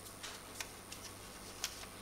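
Quiet room tone with four faint, irregular clicks, the sharpest about one and a half seconds in, like small objects being handled on a lectern.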